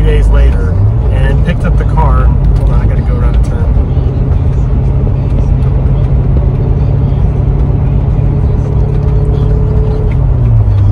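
Chevrolet C6 Corvette's V8 heard from inside the cabin while driving: a steady low drone whose pitch steps up about a second in, then holds.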